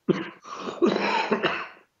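A man coughing in a short fit of several harsh coughs. It starts suddenly and dies away just before the end.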